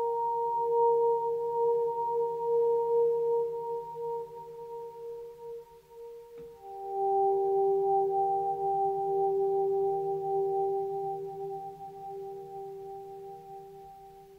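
Fender Rhodes electric piano playing slow, sustained chords in a melancholic improvised ballad: one chord rings and fades, a new chord is struck about six seconds in and rings on, slowly dying away toward the end.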